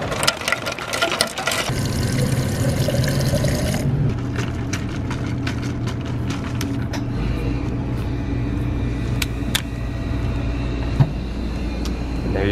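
A plastic water bottle being filled at a drink-fountain dispenser: clattering and a rushing pour that stop abruptly about four seconds in. A steady machine hum with scattered clicks follows.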